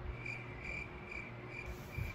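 Cricket chirping: a run of about five short, evenly spaced chirps, roughly two or three a second.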